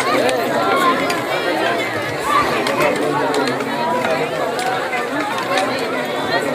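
Overlapping chatter of a group of people talking at once around a dining table, with no single voice standing out.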